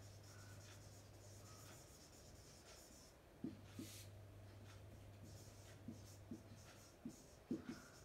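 Marker pen writing on a whiteboard, faint: soft scratching of the felt tip with a few light clicks as strokes begin, over a steady low hum.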